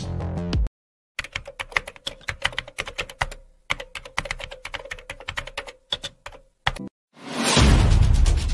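Rapid computer-keyboard typing clicks with a short pause in the middle, stopping shortly before a loud burst of music swells in near the end.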